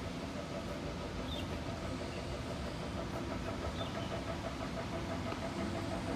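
A steady mechanical hum, as of an engine idling nearby, with a few faint short high chirps.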